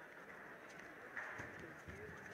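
Quiet sports-hall ambience with faint distant voices; a short louder call about a second in, then a dull thud near the end as the judoka go down onto the tatami.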